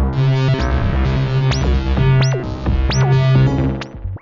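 BugBrand BugModular modular synthesizer playing a sequenced patch: a pulsing low bass line with a few sharp zaps that sweep quickly down in pitch.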